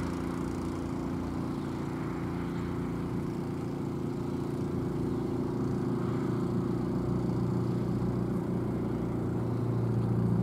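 An engine running steadily with a constant hum, growing slightly louder near the end.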